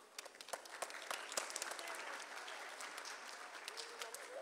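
Audience applauding. A few scattered claps build within the first second into steady clapping.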